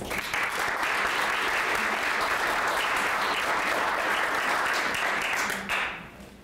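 A group of people applauding, a steady patter of clapping that dies away near the end.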